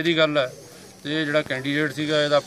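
A man speaking, with a short pause about half a second in.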